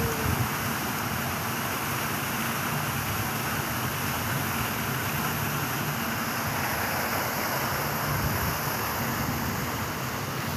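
Steady outdoor background noise, an even rush with no distinct events.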